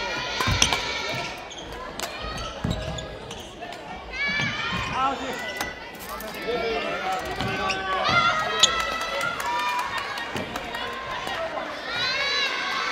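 Sports-hall ambience during a junior badminton tournament: children's high-pitched voices calling and chattering from around the hall, with a few sharp knocks of shuttlecock hits and feet on the wooden floor.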